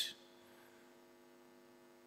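Faint steady electrical hum with a row of evenly spaced overtones, under an otherwise quiet pause.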